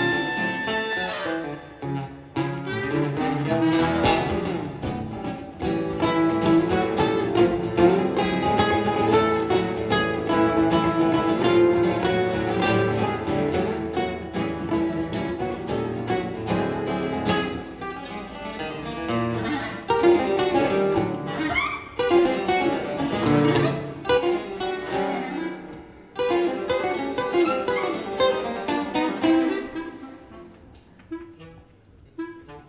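Live instrumental music led by two acoustic guitars playing a busy plucked part, with a sustained woodwind line over them.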